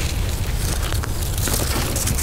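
Wind buffeting the microphone: a steady rumbling rush with no break.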